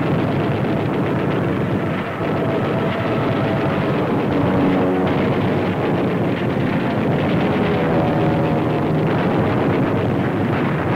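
Steady roar of aircraft engines on a 1940s newsreel soundtrack, dull and without treble, with faint held tones under it from about four seconds in.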